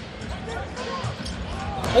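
Live basketball game sound: a basketball bouncing on a hardwood court under the steady noise of an arena crowd, which grows louder toward the end, with a sharp knock just before the end.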